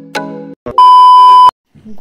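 The last struck note of background music fades, then a loud, steady electronic beep sounds for about three quarters of a second and cuts off suddenly.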